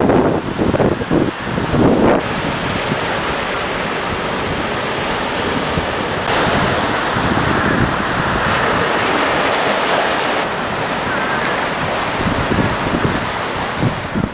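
Hurricane wind buffeting the microphone in gusts, then a steady rush of storm-surge waves breaking on the shore, the sound shifting abruptly about six seconds in.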